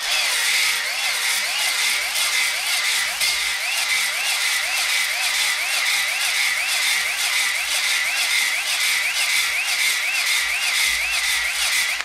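Cordless drill spinning a Flex-Hone ball hone inside an oiled cylinder bore of a cast-iron LQ9 6.0 V8 block, honing the wall to clean up pitting. The drill's steady whine wavers up and down about twice a second as the hone is stroked in and out of the bore.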